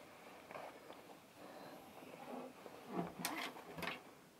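Quiet handling noise as an acoustic guitar is brought into playing position: faint rustling, then a few short clicks and knocks near the end.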